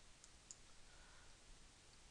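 Near silence with two faint computer-mouse clicks in the first half second.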